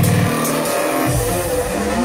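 Electronic dance music. The steady kick-drum beat drops out just after the start, leaving held synth tones, and a low bass comes back in about a second in.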